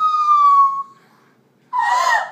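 A teenage girl's high-pitched, tearful squealing wail, held for about a second and falling slightly in pitch. After a short pause she breaks into laughter near the end.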